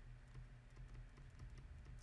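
Faint, irregular light ticks of a stylus on a tablet as a word is handwritten, close to near silence.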